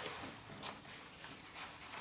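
Faint rustling of a stuffed drawstring bag being handled and pulled closed, with a few soft brief scuffs.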